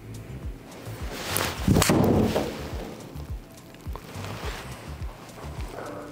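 A golf ball struck by a TaylorMade Qi10 Tour three wood in an indoor simulator bay: one sharp strike a little under two seconds in. Background music with a steady beat plays throughout.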